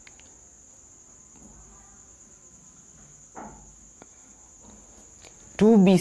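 A quiet pause filled by a steady high-pitched tone in the background, with a short faint voice sound about three and a half seconds in. Speech starts near the end.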